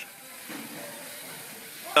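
Low, steady hiss of classroom room noise with no distinct event.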